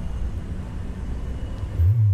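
Riding noise from a bicycle on a rough asphalt bike lane: a steady low rumble of wind and tyre noise, with a louder low thump near the end.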